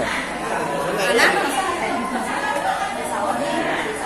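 Background chatter of many people talking at once in a large hall, the voices overlapping with no single one standing out.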